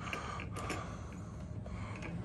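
Faint handling noise from a wire fan guard being turned and positioned by hand, with a few light clicks about half a second in.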